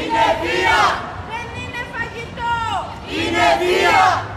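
A group of protesters shouting a slogan chant together, with two loud shouted phrases: one right at the start and another about three seconds in.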